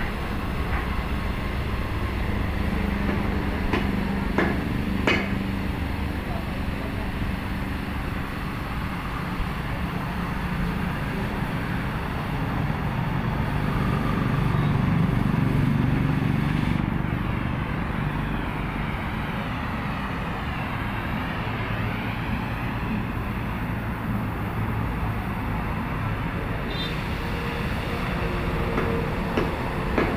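Oxy-fuel cutting torch burning through steel angle iron: a steady rushing hiss of gas and flame, with two sharp clicks about four and five seconds in.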